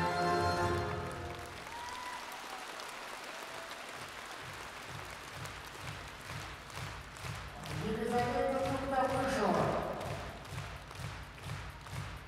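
String music ends about a second in, giving way to audience applause in an ice arena that settles into steady rhythmic clapping in unison, about two to three claps a second. A voice rises briefly over the clapping past the middle.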